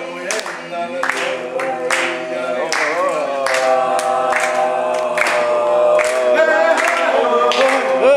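A group of voices singing together unaccompanied, holding long notes, with repeated hand claps.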